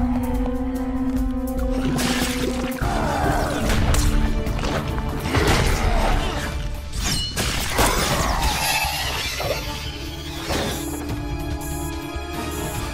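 Action-cartoon soundtrack: dramatic music with held tones, then from about three seconds in a run of crashing, smashing impact effects and sweeping whooshes layered over the score.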